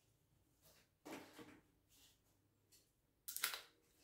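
Near silence: room tone, broken by two faint, brief noises, a soft one about a second in and a short hiss-like one near the end.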